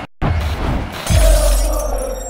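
Logo-sting sound effect: after a brief gap, a sudden shattering-glass crash comes in, joined about a second later by a deep bass boom, over music.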